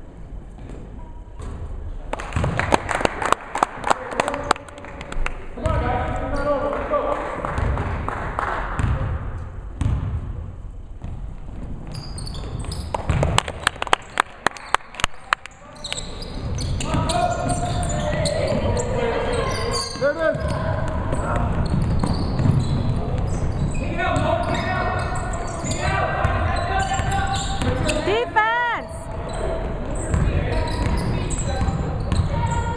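Basketball bouncing on a hardwood gym floor in runs of sharp knocks, echoing in the hall. Players' shouts come through in between, and short squeals near the end fit sneakers squeaking on the court.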